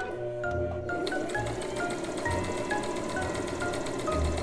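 Electric sewing machine running steadily, stitching two layers of fabric, from about a second in until just before the end. Background music of light mallet-percussion notes plays throughout.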